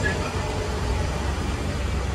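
Tour trolley's engine running at low speed, a steady low rumble heard from inside the open-sided passenger cabin.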